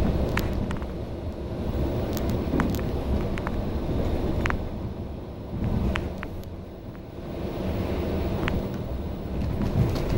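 Cabin sound of a MAN A91 bus under way: its MAN D2066 diesel engine and Voith DIWA automatic gearbox running with a steady low rumble of engine and road noise, dipping briefly about seven seconds in. Scattered sharp clicks and rattles come from the bus interior.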